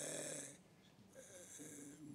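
A man's breathing at a close microphone in a pause between sentences: a short airy breath, then a second, longer one about a second in.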